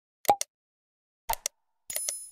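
Pop and click sound effects of an animated subscribe button: a pop and a click about a third of a second in, a quick double click about a second later, and a ringing chime beginning just at the end.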